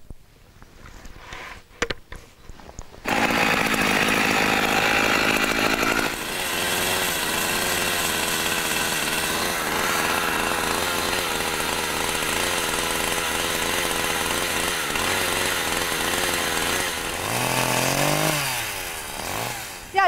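Chainsaw starting up about three seconds in and running hard as it cuts into a wooden pig sculpture. Near the end it falls in pitch as it winds down.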